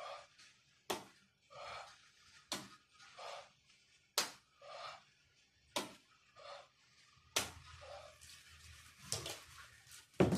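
A man breathing hard in time with dumbbell shoulder presses: a forceful breath about every second and a half, each starting with a short sharp click.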